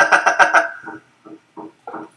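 A man's voice: a held 'eh' running on into about a second of pulsing voice sounds, then only faint short sounds.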